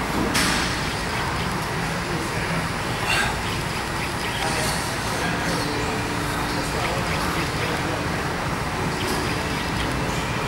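Steady gym room noise with indistinct voices in the background, broken by two brief sharp sounds, one just after the start and one about three seconds in, while a heavily loaded barbell is back-squatted.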